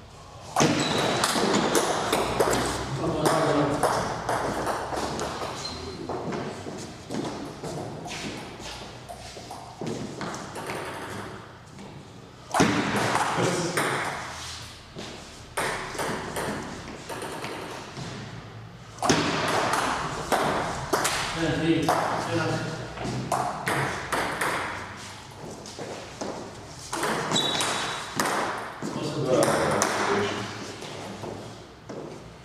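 Table tennis rallies: the celluloid ball clicking off rubber-faced paddles and bouncing on the tabletop in quick alternation. The rallies come in several bursts with short pauses between, in a reverberant hall.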